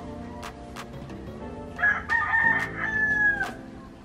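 A rooster crowing once, about two seconds in: a short first note, then a long held high call that falls slightly at its end. Background music with a steady beat plays underneath.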